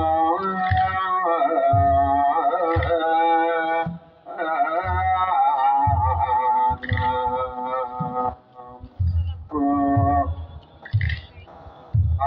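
Ethiopian Orthodox chant (mezmur) sung by a group of men with long held notes, over kebero drum beats about once a second. The chant breaks off briefly a few times, about four seconds in and again from about eight and a half seconds.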